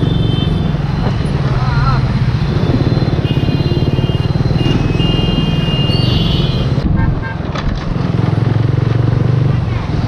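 Bajaj Pulsar 135's single-cylinder engine running as the motorcycle is ridden through traffic, its note easing off briefly about seven seconds in. Vehicle horns honk several times around it, the longest from about five to seven seconds in.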